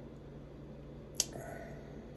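A single sharp metallic click about a second in as a heavy sterling silver chain bracelet is handled in the fingers, over a faint steady hum.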